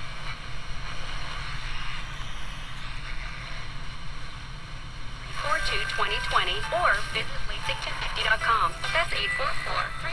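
The small speaker of a GE 7-2001 Thinline portable radio on FM hisses with static for about five seconds, a sign of weak reception. Then a station comes through with a voice over music.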